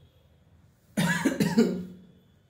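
A man coughing: a quick run of about three coughs that starts about a second in.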